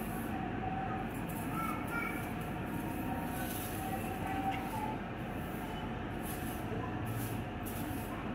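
Steady background noise, strongest in the low range, with a few faint short tones above it.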